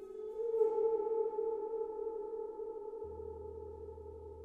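A 34-inch Zildjian hand hammered chau gong played softly with a small mallet. Its sound swells over the first second, then rings on with several steady tones that slowly fade.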